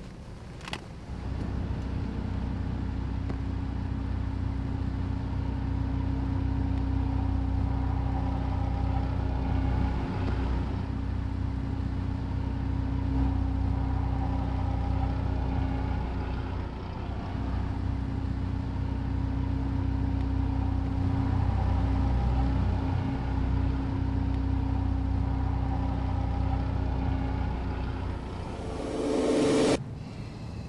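Car engine idling steadily, heard from inside the car: a low, even hum that comes in after a click about a second in.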